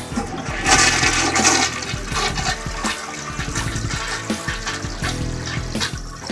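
A slow-draining toilet, partly choked with scale, being flushed. About a second in, the cistern water rushes into the bowl, loudest for the first second, and then it keeps running and swirling for the rest of the time.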